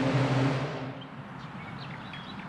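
A steady low hum of equipment in the detector hall, fading out about a second in. It gives way to a quiet outdoor background with a few short bird chirps.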